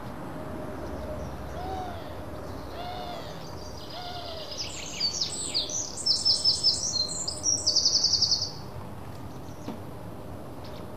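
Birds calling: three short, low hoots about a second apart, then a burst of high, rapid chirping and twittering for a few seconds, over a steady background hiss.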